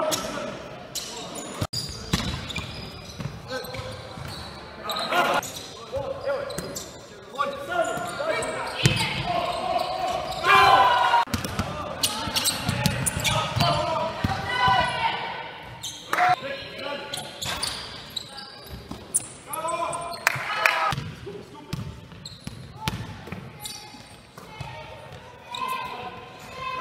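A basketball game in a large echoing gym: the ball bouncing on the wooden court again and again, with players' voices calling out over it.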